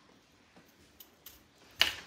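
A few faint clicks of handling, then a short, sharp cut near the end as a Fiskars craft cutting blade is pressed through a tube.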